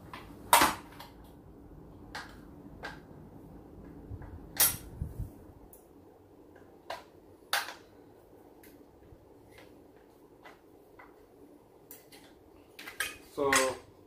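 Scattered sharp metallic clicks and clinks, a second or two apart, of a blade wrench working the arbor bolt and blade guard while a blade is fitted on a Bauer 10-inch sliding compound miter saw.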